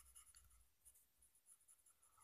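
Faint scratching of a fountain pen nib on notebook paper as handwriting is written, in short irregular strokes with small ticks. The nib gives a lot of feedback.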